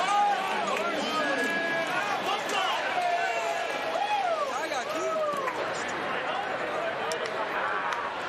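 Several men's voices shouting and whooping over one another as a baseball team cheers in the dugout, with a low crowd murmur underneath.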